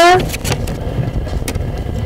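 A man's voice cuts off just at the start, leaving a steady low rumble with a few faint clicks.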